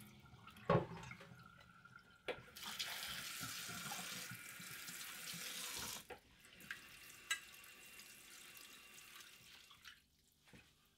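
A kitchen tap running into the sink for about three and a half seconds, rinsing brine-soaked napa cabbage in a bowl, and cut off a few seconds before the end. Before it, two sharp knocks of a ceramic plate against the bowl, the first the loudest sound; after it stops, a few light clinks.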